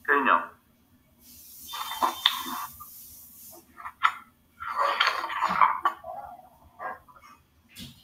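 Brief, indistinct speech from call participants heard through a video call, in short scattered phrases, with a stretch of hiss about one to three seconds in.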